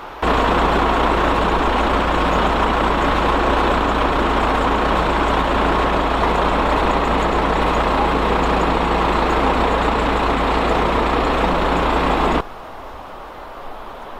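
A heavy vehicle engine running steadily with a constant low rumble; it starts abruptly just after the beginning and cuts off abruptly about twelve seconds in.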